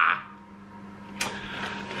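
A short, breathy laugh fading out, then a quiet stretch over a faint steady hum. A little over a second in, a click and soft rustling build up as the cardboard box of crisp packets is shifted.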